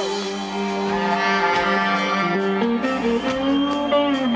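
Live rock band in an instrumental break: a saxophone and an electric guitar play held, sustained lines together over bass and drums.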